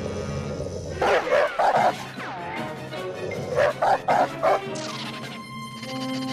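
Cartoon dog barking in two quick bursts of about four barks each, a couple of seconds apart, over background music.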